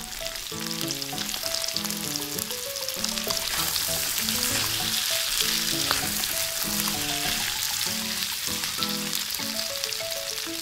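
Hot cooking oil sizzling and crackling as breaded chicken balls deep-fry in a small steel wok. It builds over the first second or so as the pieces go in, then carries on steadily. A light background melody plays underneath.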